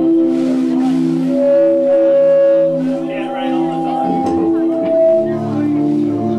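A live band playing slow, sustained chords that change every second or so, with electric guitar in the mix.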